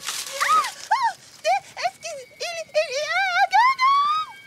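A cartoon girl's high voice humming a wordless tune in short melodic phrases that climb in pitch toward the end. A brief noisy swish comes at the very start.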